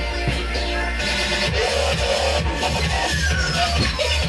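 Live electronic dance music with a dubstep feel, played loud over a festival PA: a heavy sustained bass under busy synth parts, with a falling synth sweep starting near the end.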